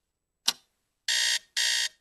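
A clock's single tick, then an electronic alarm clock going off with two high-pitched beeps from about a second in.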